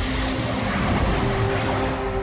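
TV sci-fi sound effect for glowing energy orbs flying across the sky: a steady rushing whoosh with a few low held tones humming beneath it.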